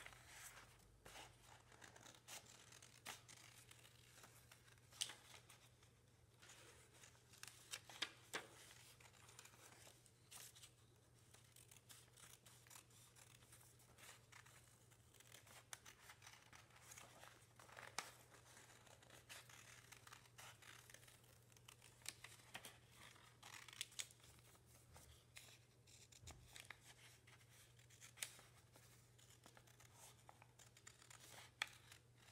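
Small scissors snipping through folded A4 paper: quiet, irregular snips with paper rustling as the sheet is turned, a few snips sharper than the rest.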